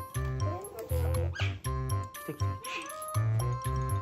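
Background music with a steady, even bass beat; a few sliding, squeaky notes rise and fall over it about a second in.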